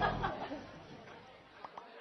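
A canned studio audience's reaction to a punchline, crowd laughter and murmuring, fading out within the first half second.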